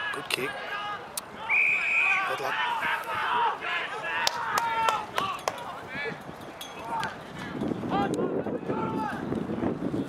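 Shouting and calling from players and spectators across an Australian rules football ground, with a short whistle blast about one and a half seconds in and a few sharp knocks.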